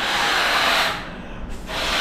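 A latex balloon being blown up by mouth: two long, breathy blows of air into it. The first ends about a second in, and the second starts near the end.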